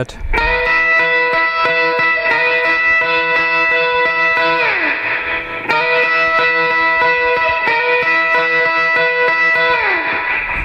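Electric guitar played in surf style: rapid tremolo-picked high notes held steady for about four seconds, then slid down the neck. The phrase repeats, with a second slide down near the end.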